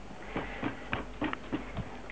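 Wire balloon whisk stirring pancake batter in a bowl, the wires knocking and scraping against the bowl in short irregular strokes, about three a second.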